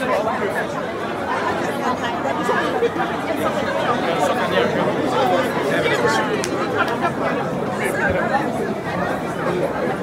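Hubbub of many guests talking at once in a large hall: overlapping party chatter at a steady level.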